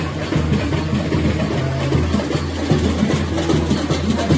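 Samba school drum section (bateria) playing a samba groove in the street: deep bass-drum beats repeating evenly under dense snare and hand-percussion.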